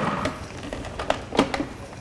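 Light clicks and taps of kitchen utensils and equipment, about half a dozen over a second and a half, after a steady hum fades out in the first half second.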